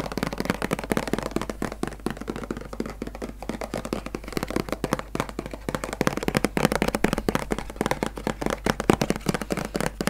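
Objects being handled close to the microphone for ASMR: a dense, unbroken run of rapid clicking, tapping and crackling, several sharp ticks a second, growing louder a little after halfway.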